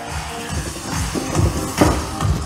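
Fast electronic workout music with a steady driving beat, about two and a half beats a second.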